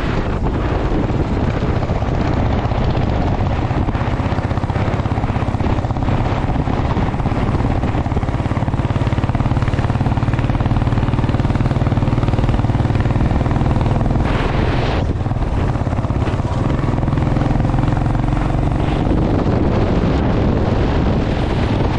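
Royal Enfield motorcycle engine running steadily at road speed, its exhaust heard close to the microphone. A brief rush of noise comes about fifteen seconds in.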